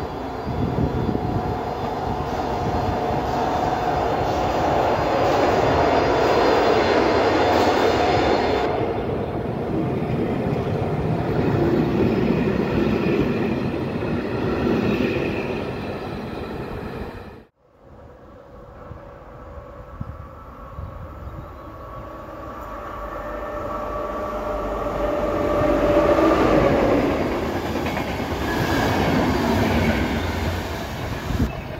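Electric-hauled passenger trains at a station. First a ČD class 242 electric locomotive and its coaches run, loud at first, then fade away. After a sudden break, a second passenger train's coaches approach and roll past, loudest about 26 seconds in, with steady wheel and rail noise.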